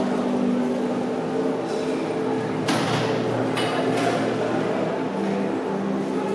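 Exhibition hall ambience: low, sustained droning tones that shift pitch every second or two, with a couple of brief clatters about three and three and a half seconds in.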